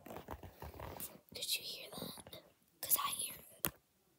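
A person whispering close to the microphone in three short stretches, ending with a sharp click.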